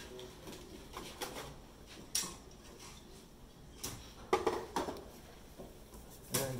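Light metal clinks and knocks from a dado blade set being handled and set back into its plastic storage case, a few separate strikes with the loudest clatter about four and a half seconds in.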